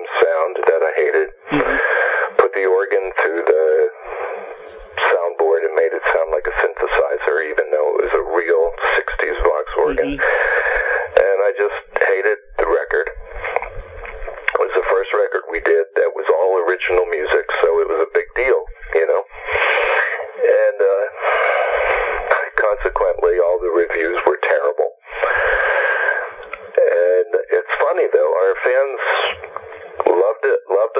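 Speech only: a person talking almost without pause over a telephone line, the voice thin and cut off above and below.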